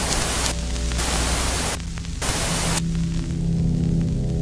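Television static: three bursts of loud hiss, each under a second, in the first three seconds. Under it runs a low drone that becomes a steady droning music tone after the last burst.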